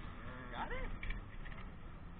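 A short, wordless human vocal sound, a single pitch that rises and then falls, lasting under half a second, over a low, steady rumble.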